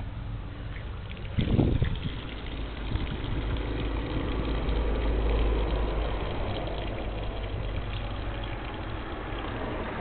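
Low rumble of a motor vehicle's engine that swells in the middle and fades again, with a brief louder bump about a second and a half in.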